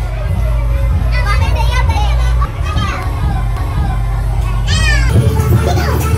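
Loud nightclub dance music with a heavy bass, with women in the crowd shouting and whooping over it in high, rising-and-falling calls. The music changes abruptly about five seconds in.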